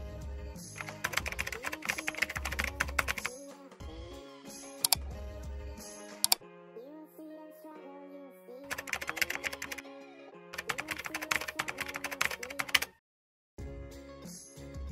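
Background music with bursts of rapid computer-keyboard typing; everything cuts out for a moment near the end.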